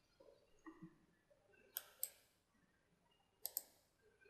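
Computer mouse button clicks: two quick pairs of sharp clicks about a second and a half apart, over near silence.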